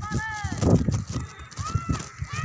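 High-pitched calls from children's voices, rising then falling in pitch, once near the start and again near the end.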